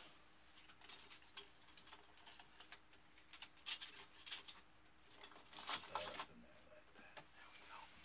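Faint, scattered small clicks and rustles of hands working in the rigging of a ship model, with a couple of brief clusters of ticks around the middle.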